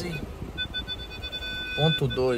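Volkswagen Polo's parking-sensor warning: a few short electronic beeps, then a steady unbroken tone from about a second in, the signal that an obstacle is very close. Low engine and cabin rumble lies underneath.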